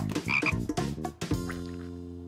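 Cartoon frog croaking: a quick run of short croaks, then one long steady croak starting about a second and a half in.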